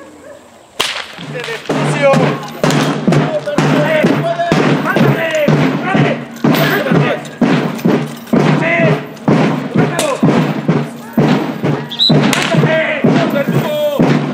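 Procession music: a steady slow drumbeat, about three beats every two seconds, with a wavering melody over it, starting abruptly about a second in.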